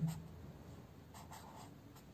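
A pen writing letters on paper: faint, short scratching strokes, clearest about a second in.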